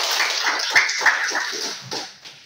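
A small group of people clapping, with short high-pitched cheers and squeals over the applause, dying away near the end.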